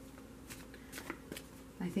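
A deck of tarot cards being shuffled by hand: a few separate, quiet flicks of cards sliding against each other.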